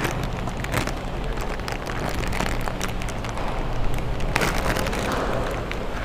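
Aluminium foil wrapper crinkling and crackling as it is unwrapped and crumpled by hand, in a dense run of irregular crackles over a steady low hum.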